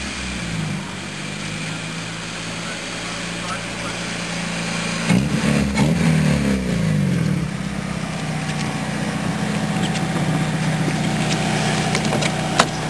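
Ford Sierra's engine running and revving as the car drives through deep snow. About five seconds in it gets louder, the pitch rising and falling over a couple of seconds, then it settles to a steadier note.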